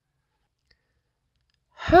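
Near silence, with a faint tick a little before the middle, then a voice begins reading the next line near the end.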